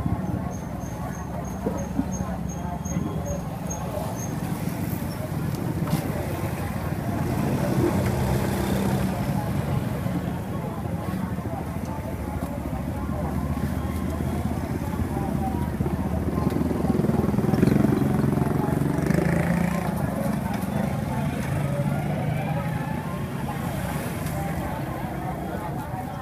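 Busy street ambience: motor traffic running steadily with background voices of people talking. A run of short high beeps sounds in the first few seconds.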